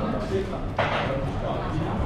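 Indistinct voices in a room, with a short sharp noise just under a second in.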